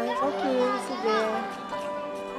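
Children's voices chattering over background music with held notes; the voices are strongest in the first second or so.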